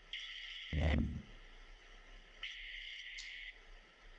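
Internet-call line breaking up: a thin hiss cuts in and out abruptly twice, with a short muffled low burst about three-quarters of a second in, the sign of a failing connection.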